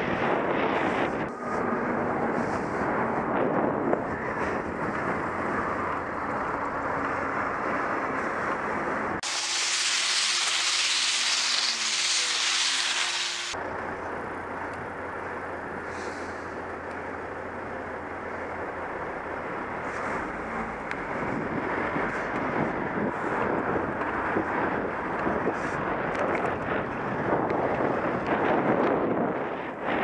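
Wind buffeting the microphone of a moving onboard camera, a rough steady rush with street traffic underneath. For about four seconds in the middle it abruptly turns into a thin, high hiss, then returns.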